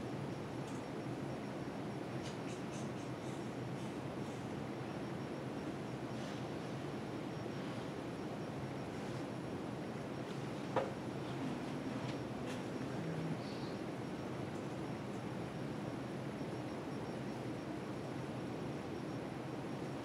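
Steady room noise from a meeting room, with faint, scattered keyboard clicks as code is typed and one sharper click about eleven seconds in.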